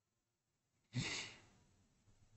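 A man's single short sigh, about a second in, amid near silence.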